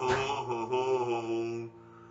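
A man's long held sung note, slightly wavering, with the acoustic guitar ringing under it; it fades and stops near the end.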